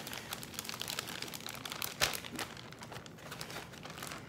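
Plastic Ziploc bag crinkling as its zipper seal is pressed shut, with a run of small clicks and crackles and one louder crackle about two seconds in.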